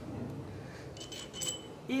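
Small steel steering-kit parts (a ball-bearing cage and washers) clinking faintly as they are handled and picked up from a tiled floor, with a brief metallic ring about halfway through.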